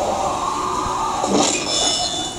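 Action film trailer soundtrack: a loud, noisy sound effect that swells in at the start and shifts about a second and a half in, with faint music under it.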